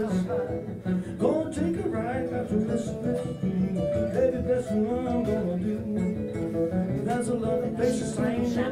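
Two guitars playing a country-blues instrumental passage live: an acoustic guitar strummed in a steady rhythm, with a second guitar picking a melody over it.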